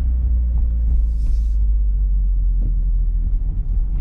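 Steady low rumble of wind and road noise in the open cabin of a Mazda MX-5 Roadster driving with its roof down, with a brief hiss about a second in.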